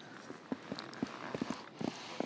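A few faint, irregular clicks or light knocks, about one every half second, over a low hiss.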